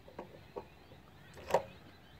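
Small clicks of the INNOVV K5 camera being handled on its handlebar mount, with one sharper click about one and a half seconds in.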